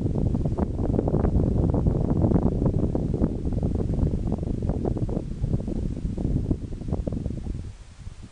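Wind buffeting the camera microphone: a loud, gusty low rumble with crackle that dies away shortly before the end.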